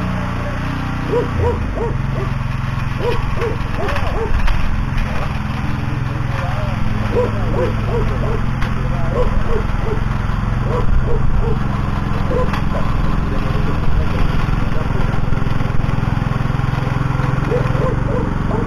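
Small walk-behind tiller's petrol engine running steadily under load as its tines churn the garden soil. Short pitched calls come in quick groups of three or four over the engine.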